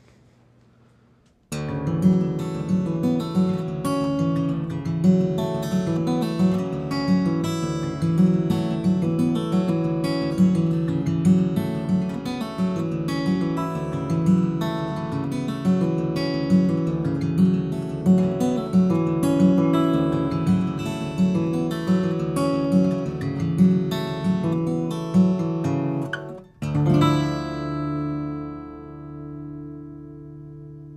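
Bourgeois OM steel-string acoustic guitar played fingerstyle: picked melody notes over a repeating bass pattern, starting about a second and a half in. Near the end the playing stops briefly, then a final chord is struck and left to ring out.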